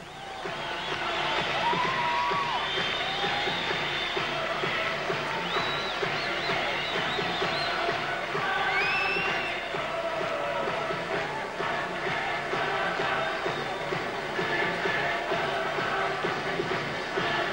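Ring-entrance music playing over an arena crowd cheering, with high, short rising-and-falling calls rising above it; the sound swells up sharply about half a second in and stays loud.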